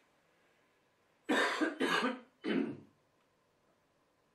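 A man coughs three times in quick succession, short rough coughs from a heavy head cold.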